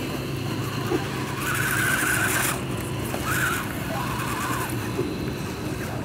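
Electric motors and gearboxes of RC scale crawler trucks whining in short bursts of about a second as they climb a dirt slope, over a steady low hum.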